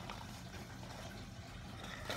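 Quiet room tone: a steady low hum with faint hiss, and no distinct sound standing out.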